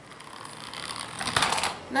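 Small battery-driven electric motor of a homemade toy car running with only one of its two motors connected: a rattling whirr that builds over about a second and a half and then stops.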